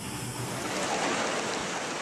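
Steady, even noise of tunnel boring machinery at work, with no distinct knocks or tones.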